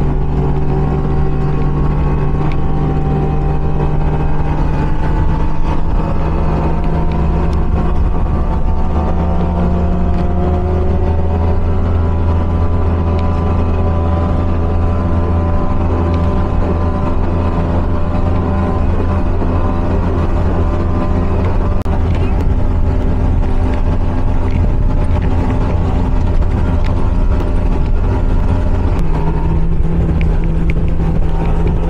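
Speedboat engine running at speed, heard from on board with wind and water noise; its note climbs slowly over the first several seconds, then holds steady.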